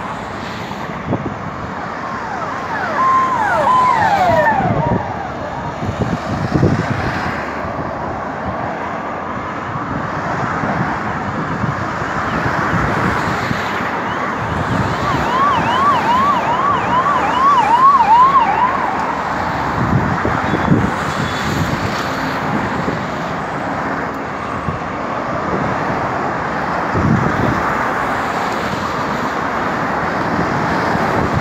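Street traffic noise with a vehicle siren sounding in two short spells: a falling wail a few seconds in, then a fast yelp rising and falling about twice a second around the middle.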